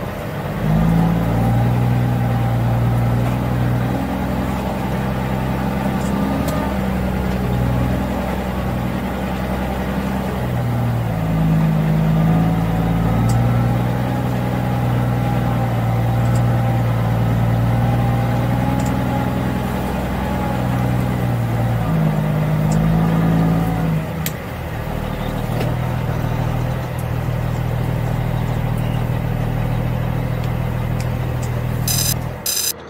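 Kenworth C500 truck's diesel engine running under load while driving, heard from inside the cab, its note rising and falling with the throttle. The engine drops off briefly about three-quarters of the way through, then picks up again.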